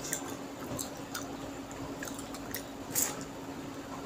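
Wet squishing of fingers mixing rice and mutton curry on a steel plate, with chewing and scattered small clicks, the sharpest about three seconds in. A steady low hum runs underneath.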